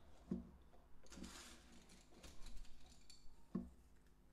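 Faint clicks and light wooden knocks of flat wooden craft sticks being handled and threaded onto a wrapped wire, with a soft rustle around a second and a half in and two short dull knocks, one just after the start and one near the end.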